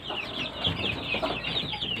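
Young chicks peeping continuously: many quick, high-pitched peeps that each slide downward in pitch, overlapping one another.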